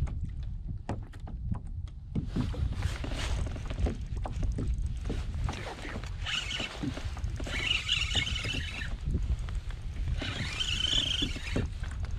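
Wind buffeting the microphone under small handling clicks, with three stretches of a spinning reel being cranked, about six, eight and eleven seconds in.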